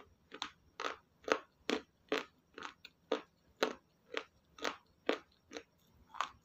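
Mouthfuls of raw green vegetable salad being chewed close to the microphone: steady crisp crunching, about two bites a second.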